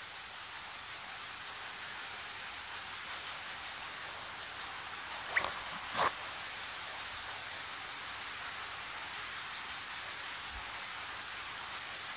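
Steady background hiss, even and unchanging, with two faint short sounds about five and six seconds in.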